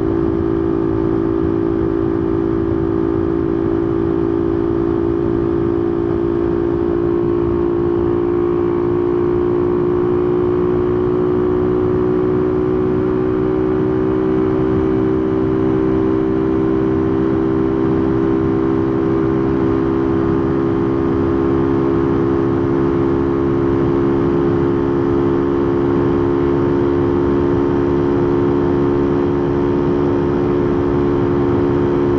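Honda motorcycle's carbureted engine running at a steady cruise during its break-in period, with the carburetor's intake noise and wind rushing on the microphone. The engine note rises slightly about ten seconds in, then holds steady.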